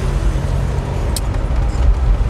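Car cabin noise while driving: a steady low engine and road rumble, with one short click a little after a second in.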